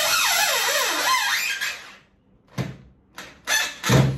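Corded drill-driver driving a wood screw into MDF with no countersunk pilot hole, its motor pitch wavering up and down under the heavy load for about two seconds. Then a few short sharp knocks.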